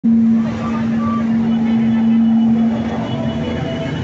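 A vehicle engine running with a steady low hum, with faint voices behind it.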